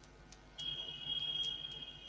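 A steady high-pitched tone, like a beep or whine, starting about half a second in and holding for nearly two seconds, with a few faint clicks.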